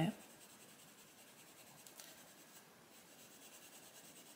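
Castle Arts Soft Touch coloured pencil shading on a paper page, faint and steady, as the layers are built up on a leaf.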